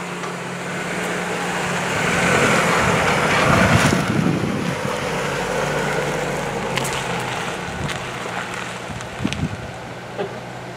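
A Renault Arkana passing slowly close by and driving away: an engine hum with tyre noise that grows loudest about four seconds in, then fades as the car pulls off.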